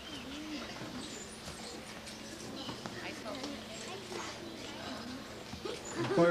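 A crowd of children chattering and calling out at once, many small voices overlapping, with scattered light knocks.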